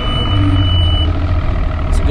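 Boat's outboard motor running steadily at idle, just started, with a thin high steady beep over the first second.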